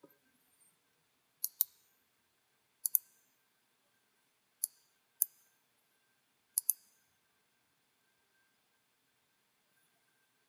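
Computer mouse buttons clicking, mostly in quick pairs, five times over several seconds.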